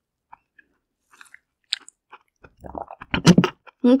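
Close-up chewing of soft steamed whole zucchini: quiet at first, then wet mouth sounds build from about halfway through, with the loudest chomps near the end as she bites into it again.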